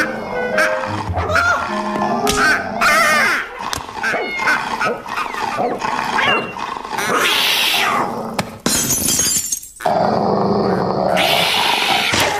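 Cartoon soundtrack music mixed with comic sound effects, including an animal-like vocal noise and several short noisy bursts.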